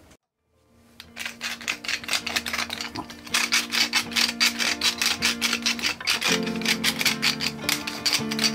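Background music begins about a second in, after a moment of silence: held notes under quick, even plucked strokes.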